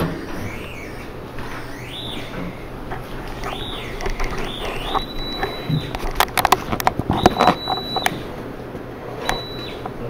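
Handheld Gauss meter's audio tone gliding up and down in pitch, then several times holding a steady high whistle at the top of its range, with a quick run of clicks about six to seven seconds in.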